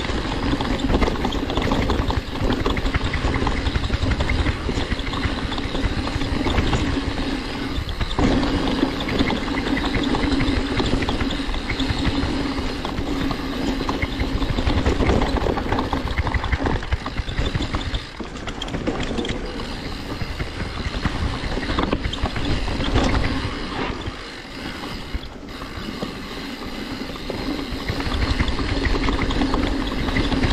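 Mountain bike ridden downhill over a dirt forest trail: continuous tyre rolling noise with the frame, chain and parts rattling over roots and bumps, briefly quieter twice in the second half.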